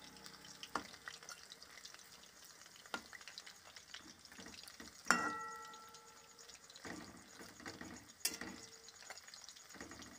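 Chicken pakoras sizzling and crackling in hot oil in a metal wok as a metal spatula turns them over, knocking and scraping against the pan several times. The loudest knock, about five seconds in, leaves the wok ringing briefly.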